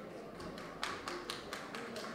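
A quick, irregular run of sharp taps, several a second and uneven in strength, starting about a second in.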